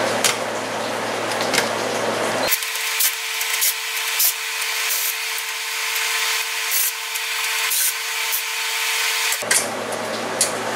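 Cordless drill/driver backing screws out of a box fan's metal wire guard, with scraping and rubbing against the guard and sharp clicks.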